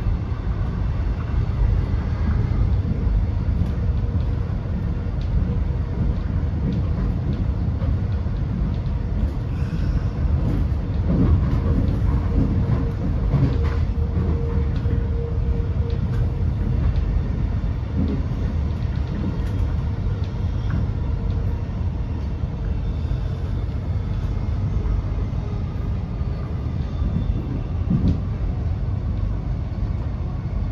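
Interior ride noise of an X'Trapolis electric multiple unit running at speed: a steady low rumble of wheels on rail, with a faint steady hum in the middle and a few sharp knocks as the wheels cross rail joints and points.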